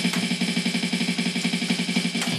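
Yamaha DD-5 digital drum pad struck with sticks in a fast, even roll of about twenty strokes a second, on a low drum sound.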